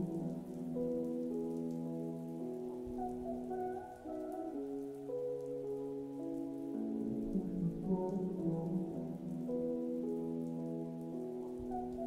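Steady rain sounds layered over a muffled pop song, the music dull and low as if heard through a wall, moving in slow held chords that change every couple of seconds.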